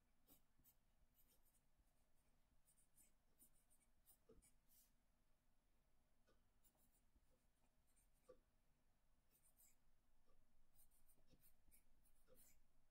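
Faint scratching of a pencil writing on a paper worksheet, in short spells of strokes with brief pauses between words.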